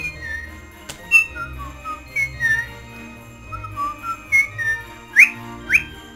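A woman whistling a melody, with two quick upward swoops near the end, over quieter background Christmas music.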